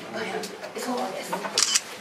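Quiet voices from off the microphone answering a question, with a few short sharp clicks.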